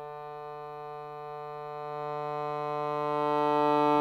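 Piano accordion holding one long sustained chord, the reeds sounding steadily while the bellows swell it gradually louder; it moves to new notes at the very end.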